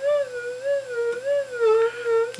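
Minelab SD2200 V2 metal detector's target signal: a steady tone that wavers up and down in pitch a little under twice a second, the detector responding to a ring held above its search coil.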